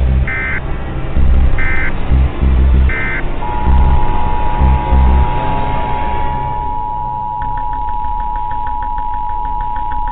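Three short high beeps over a deep pulsing rumble, then a steady two-pitch Emergency Alert System–style attention tone starting about three seconds in. A fast ticking joins it in the second half.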